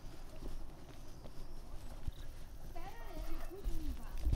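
Irregular footsteps of someone walking down a dirt hiking trail, over a steady low rumble.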